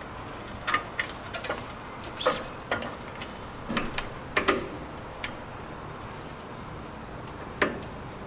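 Light handling clicks and knocks, scattered and irregular, from a high-pressure hose end and its metal fitting being worked into a metal hose reel's swivel fitting.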